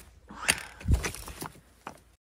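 Footsteps of trail shoes on a path of loose rocks and dry leaves, four steps about half a second apart, stones knocking and scuffing underfoot.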